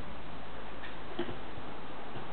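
Steady background hiss with two faint, short clicks about a second in.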